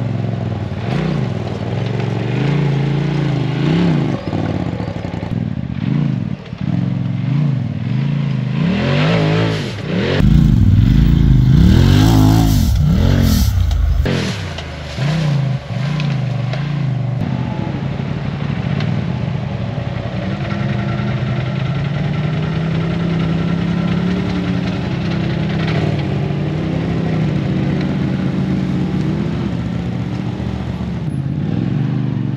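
Off-road vehicle engine revving up and dropping back again and again as it climbs rough ground. A loud rush of noise comes about ten seconds in and lasts a few seconds, then the engine settles into a steadier drone.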